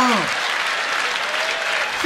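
Stand-up comedy audience applauding and laughing after a punchline, a steady wash of clapping.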